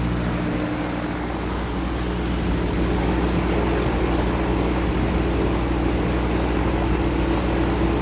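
Steady humming buzz of a CO2 laser engraver's support equipment running together: its small electromagnetic air compressor for the air assist, the water-cooling pump and the exhaust fan, while the machine engraves.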